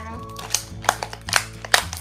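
Clear plastic toy packaging crackling as it is pulled open, with about four sharp snaps roughly half a second apart. Background music plays underneath.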